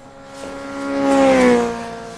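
Motorcycle engine passing by: it swells to its loudest about a second and a half in, then its pitch drops a little as it goes past and fades, the Doppler shift of a passing source.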